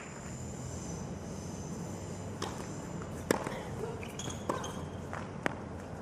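Tennis ball strikes in a doubles rally: four sharp pops over the second half, the loudest a little over three seconds in, over a low background of crowd and court.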